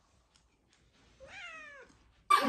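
A domestic cat meows once, about a second in. The single call lasts about half a second and rises slightly in pitch before falling away.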